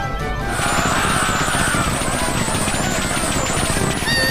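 Anime soundtrack: background music with high chiming notes over a loud, dense clatter of rapid hits and noise.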